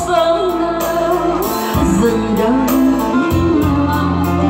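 A woman singing into a microphone with long held, wavering notes, accompanied by an electronic keyboard.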